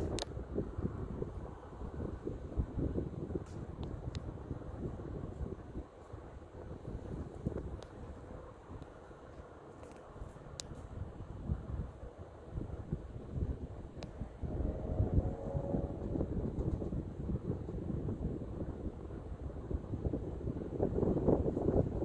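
Wind buffeting the microphone: an uneven low rumble that rises and falls in gusts, easing off in the middle and growing stronger near the end, with a few faint clicks.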